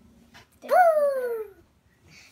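A single high whining cry, about a second long, that rises sharply and then slides slowly down in pitch, over the last of a fading piano note.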